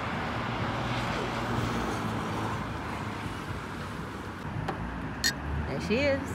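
Steady rumble of road traffic on a city street, with cars passing close by. A short click sounds a little after five seconds in.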